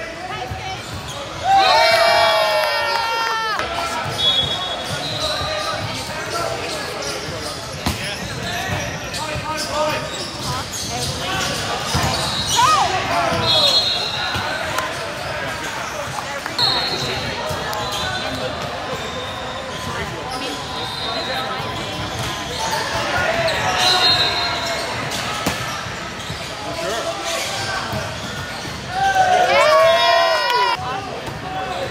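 Indoor volleyball play in a large echoing gym: the ball being struck and bouncing on the court, with loud player shouts about a second and a half in and again near the end. Short high-pitched tones come up several times in between.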